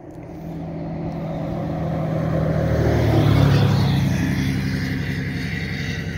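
A motor vehicle passing on the road: engine and tyre noise growing louder to a peak about three seconds in, then fading.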